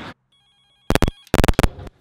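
The sound cuts out, and about a second in it breaks into loud, irregular crackling and popping bursts from a malfunctioning microphone.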